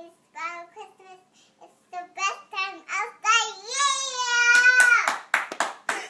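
A young girl singing a Christmas song, ending on a long held note. A few hand claps follow near the end.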